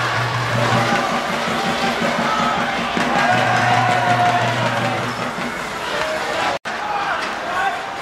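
Football spectators shouting and calling, many voices overlapping, with a steady low droning tone underneath for the first five seconds or so. The sound cuts out for an instant near the end, where the video is edited.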